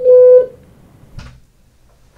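A single electronic beep, a steady buzzy tone lasting about half a second, sounded from the lab computer to wake the sleeping participant during REM sleep for a dream report. A faint short rustle follows about a second later.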